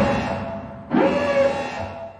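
Tense film score: a low hit followed by a held note, repeating about every second and a half.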